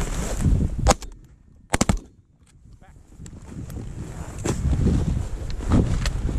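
Shotgun shots at a flying goose: one sharp report about a second in, then two more in quick succession less than a second later.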